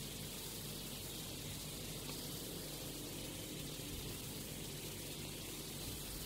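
Faint steady hiss of background room tone with no distinct events.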